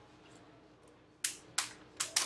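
Two sharp computer mouse clicks, about a second and a quarter in and a third of a second apart, over a faint steady hum.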